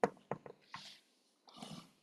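A short pause in speech holding faint mouth clicks and soft breath sounds: a few small clicks near the start, then a brief hiss of breath and another short faint breath just before speech resumes.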